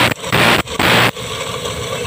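Hand file rasping across the teeth of a handsaw as the saw is sharpened: two quick strokes about half a second apart in the first second, then a quieter stretch.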